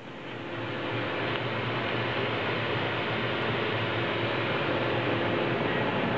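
Steady running hum and hiss of a CNC vertical machining centre's machinery, swelling over the first second and then holding level.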